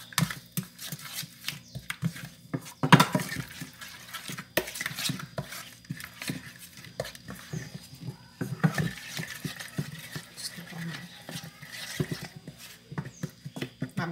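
Wooden spoon stirring a thick spice marinade in a metal pan, with irregular scraping and knocking against the pan; the loudest knock comes about three seconds in.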